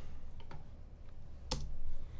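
Computer keyboard and mouse clicks: a few faint clicks, then one sharper, louder key press about one and a half seconds in, over a low steady hum.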